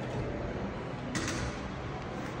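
Claw machine's claw mechanism running as the claw moves and lowers, with one short noisy burst about a second in, over a steady low hum of store ambience.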